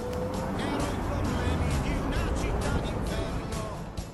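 Street traffic, with cars and a scooter passing close, mixed with music and voices.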